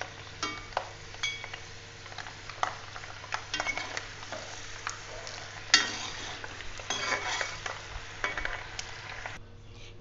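Boondi (gram-flour batter drops) frying in hot oil in a steel kadai, with a faint sizzle, while a perforated steel ladle stirs and scoops them, scraping and clinking against the pan. The sharpest clink comes about six seconds in.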